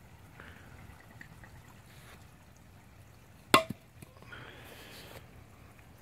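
Pond water trickling and pouring in the background, with one sharp knock, the loudest sound, a little past halfway and a short rush of noise just after it.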